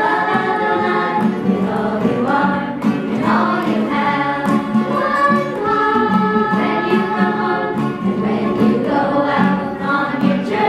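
A small group of men and women singing together in a steady, continuous melody.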